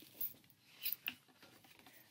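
Faint handling sounds of a hardcover book being lifted out of a subscription box: two brief soft rustles, one just after the start and one about a second in.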